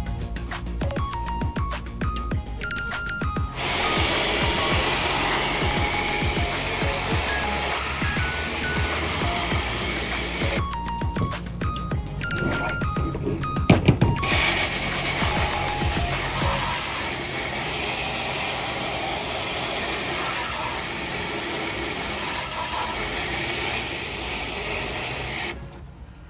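Background music with plinking notes throughout. Over it, twice, comes a steady hiss of water spraying onto acid-soaked steel tin snips to rinse off loosened rust: from a few seconds in to about ten seconds, and again from about fourteen seconds until just before the end. Two sharp knocks come just before the second spray.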